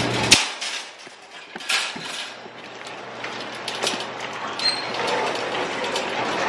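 Metal wire shopping cart rattling and clinking as it is taken and pushed, with a few sharp clicks spread through and the loudest one about a third of a second in.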